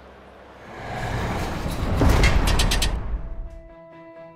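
A whoosh-like transition sound effect: a swell of noise with a deep rumble that builds to a peak about two seconds in and cuts off near three seconds. Soft music with held notes follows.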